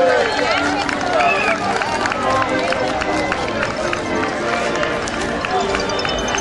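A crowd walking in procession on an asphalt street: many irregular shoe steps and scuffs, with people talking among themselves.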